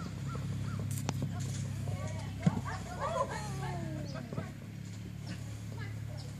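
A horse whinnying about two seconds in: a long call that falls in pitch, over a steady low hum, with short bird calls and a sharp knock.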